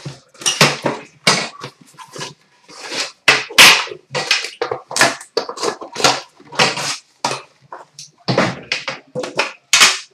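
A cellophane-wrapped trading card box being torn open by hand, with the tin inside pulled out and handled: a dense, irregular run of loud plastic crinkling, tearing and cardboard scraping.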